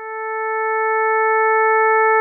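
A steady, mid-pitched synthesized tone with a few evenly spaced overtones. It swells up from quiet at the start and then holds at one pitch.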